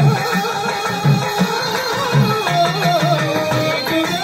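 Live devotional folk music: a wavering melody over the low, regular strokes of a hand drum.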